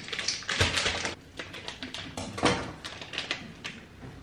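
Kitchen handling sounds: a string of clicks and knocks from plastic measuring cups against a stainless steel bowl, with rustling of a plastic flour packet about half a second to a second in and a louder knock a little past the middle.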